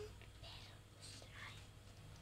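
Near silence, with a few faint, short, soft squishing sounds as hands stretch and squeeze purple slime.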